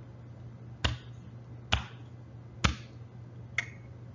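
Finger snapping: four crisp snaps at an even pace, about one a second.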